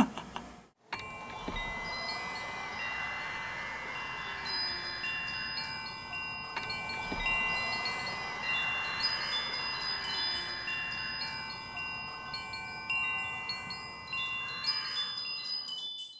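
Chimes ringing: many sustained bell-like notes at different pitches overlap and linger, starting about a second in after a brief drop to silence.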